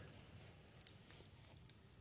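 Near silence in a pause between spoken phrases, with a few faint short clicks about a second in and again near the end.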